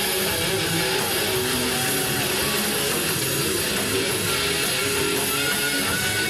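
Heavy metal band playing live: distorted electric guitars, bass and drums, with a few held notes that bend in pitch.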